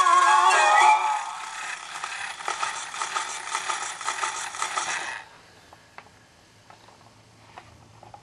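A Lumar clockwork toy gramophone's tinny horn playback of a 78 rpm children's record ends about a second in, leaving needle hiss with scattered ticks from the spinning record. Just after five seconds the hiss cuts off suddenly as the needle is lifted, followed by faint clicks and rattles of the toy tonearm and record being handled.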